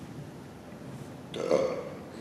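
A person burping once, briefly, about a second and a half in.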